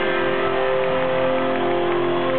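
Live rock band holding a steady sustained chord, guitars ringing out as the song winds down.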